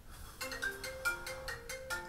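Mobile phone ringtone for an incoming call: a quick melody of short marimba-like notes, about five a second, starting about half a second in.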